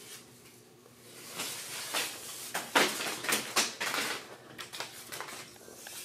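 An irregular run of short rustling and knocking noises, starting about a second in and loudest midway, over a faint steady hum.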